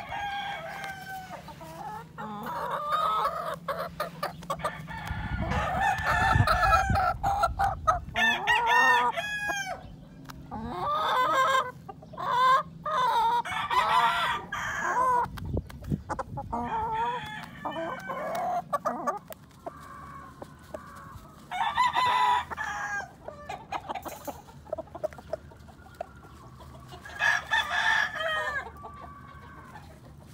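Gamefowl roosters crowing over and over, with clucking between the calls. The calls overlap almost without pause for the first several seconds, then come in separate bursts, with a last crow near the end.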